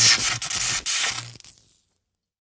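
A loud, rasping scraping sound effect over a video transition, made of many short gritty strokes, fading out about one and a half seconds in.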